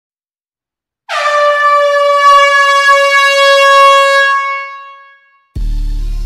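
A loud horn blast on one steady pitch, starting about a second in, held for about three seconds and then fading away. Background music begins near the end.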